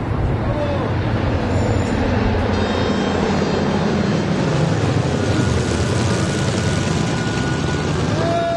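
Vintage piston-engined propeller airliner flying low overhead, its engines giving a loud, steady drone that swells through the middle of the pass.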